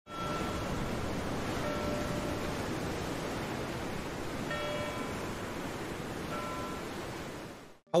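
Steady sound of a rough sea, an even rushing of waves, fading out just before the end. Faint short ringing tones sound over it four times.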